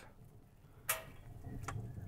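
Hot offset smoker drawing a lot of air through its firebox: a low rumble that builds in the second half and sounds kind of like a jet engine. A sharp click comes about a second in.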